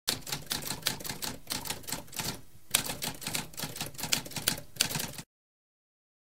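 Typewriter being typed on: a quick run of key strikes, a brief pause about two and a half seconds in, then more typing that stops abruptly about five seconds in.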